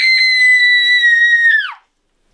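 A girl's long, high-pitched scream of acted pain, held on one pitch for under two seconds, then sliding down and stopping abruptly.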